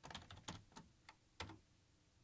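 Faint computer keyboard typing: about half a dozen separate keystrokes, unevenly spaced.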